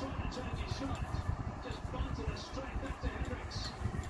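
Sound of a televised cricket match coming from a TV's speakers and picked up in the room: indistinct voices over a steady, rumbling background din.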